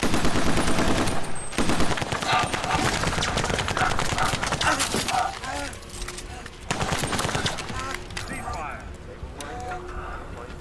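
Rapid automatic gunfire from a film soundtrack, starting suddenly and running for about five seconds, with a second, shorter burst about seven seconds in.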